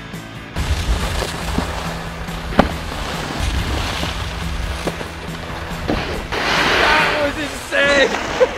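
Snowboard sliding and scraping over packed snow with wind rumbling on the microphone, a few sharp knocks of the board, and a brighter hiss of spraying snow near the end, under steady background music.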